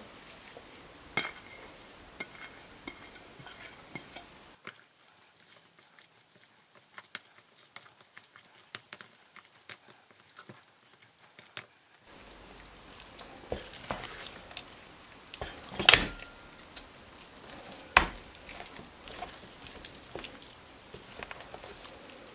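Wooden spoon stirring a thick, sticky flour halva with melting cheese in a stainless steel pot: scattered soft scrapes and clicks against the pot. Two louder knocks come in the second half.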